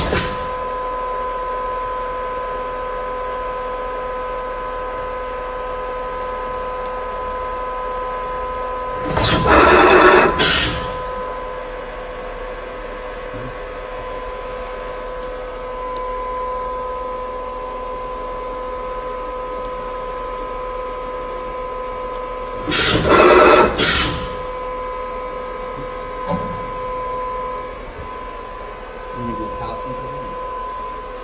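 Fanuc RoboDrill α-T14iA machining center running with a steady whine, broken twice by loud, hissing bursts of about a second and a half during its turret tool changes, with a few light knocks near the end.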